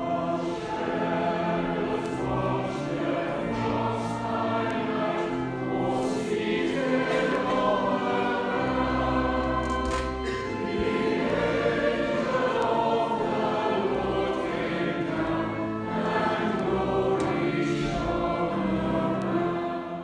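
Church choir and congregation singing a Christmas carol with organ accompaniment, the sound fading out at the end.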